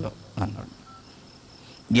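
A pause in a man's speech into a handheld microphone. A single short syllable comes about half a second in. Then a quiet room follows, with a few faint, short, high-pitched electronic beeps.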